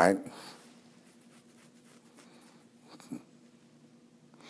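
A man's voice finishes a word at the start, then a pause of faint room tone with a low steady hum and one small click about three seconds in.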